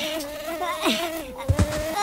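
A steady insect-like buzz, as of small wings in flight, holding one slightly wavering pitch, with a short low thump about one and a half seconds in.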